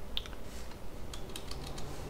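Computer keyboard keystrokes: scattered light clicks, a few near the start and a quicker run in the second half.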